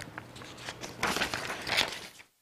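Sheets of paper rustling and shuffling as they are handled and gathered up on a desk, a string of crackles that grows louder about a second in.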